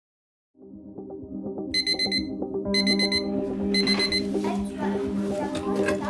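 A digital alarm clock beeping in three short bursts of rapid beeps, about a second apart, over a steady pulsing electronic music score.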